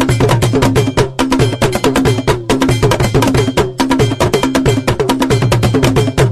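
Percussion music led by a metal bell struck in a rapid, steady rhythm over a repeating pattern of pitched drums.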